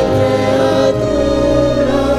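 Choir singing long held notes over a steady low musical accompaniment.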